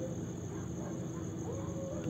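Crickets chirping steadily, a continuous high-pitched trill.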